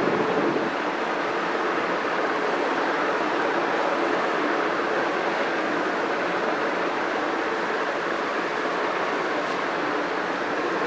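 Hand-held eraser rubbed back and forth across a whiteboard, wiping it clean, making a steady rubbing noise.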